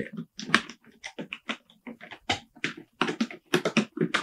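A sneaker box being handled while its slip-on shroud is worked off it: a string of short, irregular scrapes, rustles and taps.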